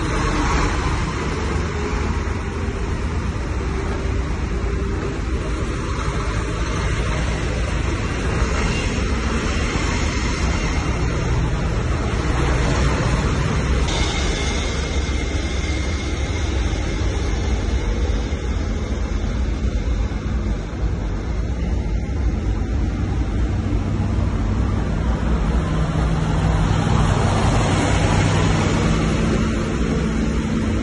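Canvas-covered military trucks driving past in a column: steady diesel engine and tyre noise. Near the end a low engine note grows stronger and a little louder as a truck passes close.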